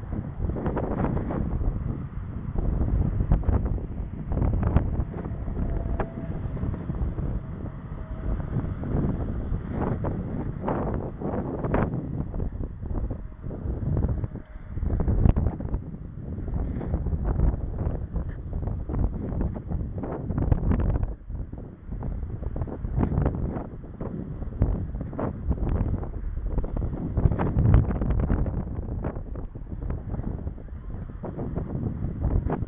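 Wind buffeting the microphone of a camera mounted on a moving bicycle, with frequent knocks and rattles throughout as the camera jolts on its mount.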